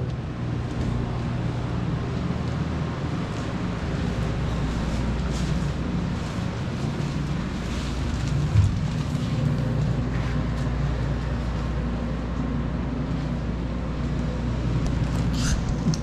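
Steady low hum and fan noise from a walk-in meat cooler's refrigeration unit, with a single thump about eight and a half seconds in.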